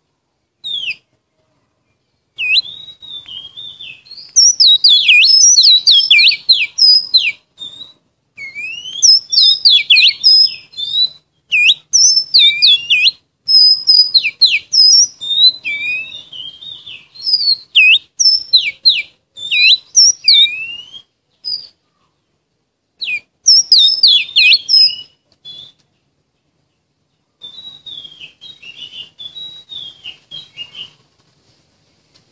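Oriental magpie-robin singing a lure song: bouts of rapid, varied whistled notes and sweeping phrases with short pauses between them. There is a longer pause near the end, then a softer bout. This kind of song is played to draw wild magpie-robins and to spur caged birds to sing.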